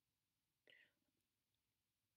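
Near silence, broken about two-thirds of a second in by one brief, faint whispered voice sound.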